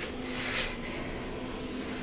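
Steady low hum of a small enclosed room, with a soft brief rustle about half a second in.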